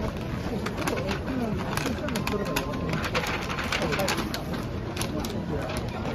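Wrapping paper crinkling and crackling as it is folded tightly around a gift box, with voices murmuring in the background.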